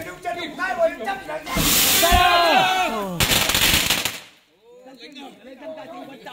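A loud burst of firecrackers going off for about two and a half seconds, with a man shouting over the first part. The crackling turns into a rapid run of sharp bangs and cuts off suddenly about four seconds in.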